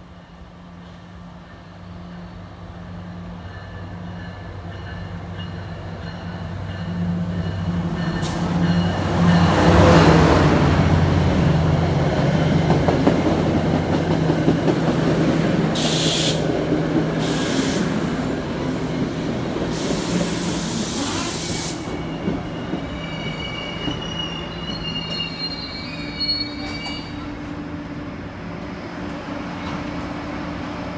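NJ Transit ALP-45DP locomotive running on its diesel engines with a steady low drone, approaching and passing close by about ten seconds in. Its Comet passenger coaches then roll past and slow to a stop, with several bursts of brake and wheel squeal in the second half.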